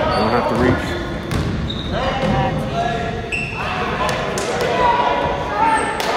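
Basketball game in a gym: indistinct voices of players and spectators ringing in the large hall, with a basketball being dribbled on the hardwood floor.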